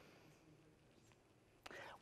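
Near silence: faint, distant speech off the microphone fading out, then a short breath-like sound near the end.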